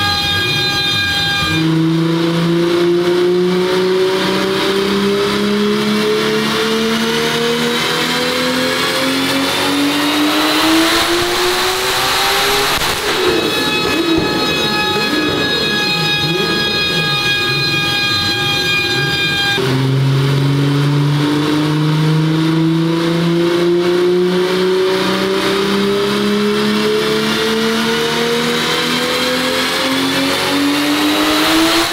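Mk2 VW Golf with a turbocharged VR engine making two full-throttle runs on a chassis dyno at around 1.8 bar of boost. Each time the engine note climbs steadily for about ten seconds; the first run ends in a rush of noise, and the second is still climbing at the end.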